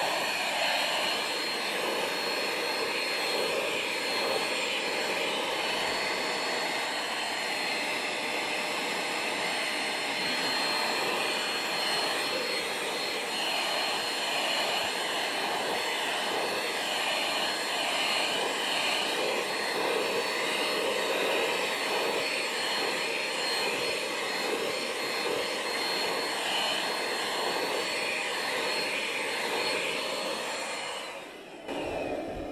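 Handheld vacuum cleaner running steadily with a high motor whine, its crevice nozzle held against a cat's coat to suck up loose fur during brushing.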